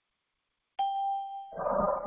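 A single bell-like ding about a second in, one clear tone that rings for about half a second, followed by a short papery rustle as a printed number card is turned over.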